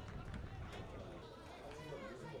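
Footballers' voices shouting and calling on an open pitch, indistinct, with a few short knocks over a steady outdoor rumble.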